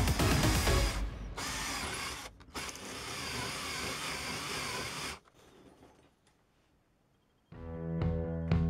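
An electric drill with a twist bit boring a cross-hole through a steel M8 coupling nut held in a vise, the motor running steadily under load, with background music over the first second. The drilling stops about five seconds in, and music begins near the end.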